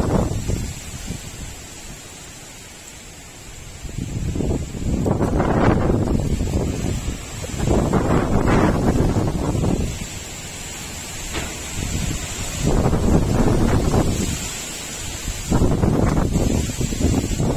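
Gusty storm wind tossing the trees and buffeting the microphone. It comes in repeated gusts that swell and die away every few seconds, with leaves rustling through it.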